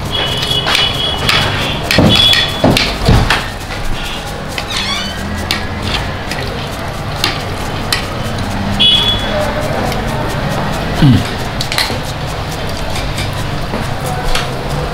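Spoons clinking and scraping against a shared metal serving platter during a meal, with sharp clicks and brief high ringing tones in the first couple of seconds and again about nine seconds in.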